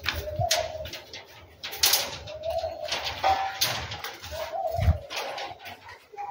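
A dove cooing: three short low coos about two seconds apart, among scuffing footsteps and knocks.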